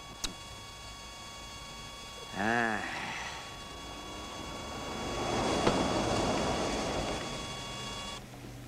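A short wordless vocal sound from a man about two and a half seconds in, then a vehicle going by, its noise rising and fading over about three seconds, over a faint steady hum.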